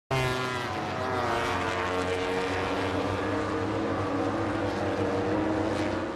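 Racing motorcycle engine running steadily, a sustained engine note held at a fairly even pitch.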